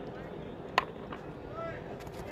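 Open-air cricket ground ambience with faint, distant voices calling out, and a single sharp click a little under a second in.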